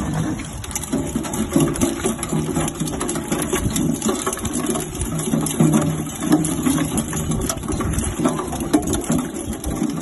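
A motor running aboard a small fishing boat, with a low hum whose pitch comes and goes in short stretches, and scattered clicks and rattles.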